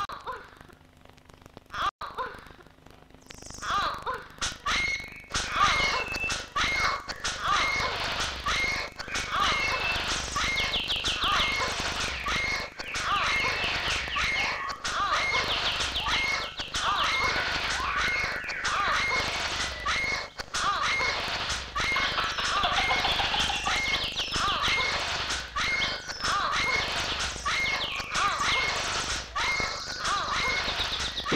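Experimental soundtrack of dense chirping and squealing, voice-like and bird-like, over a short high blip repeating at a steady beat. It starts sparse and fills in about four seconds in.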